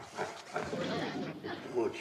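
A man snoring in a chair, a few rough snoring breaths and snorts as he is woken.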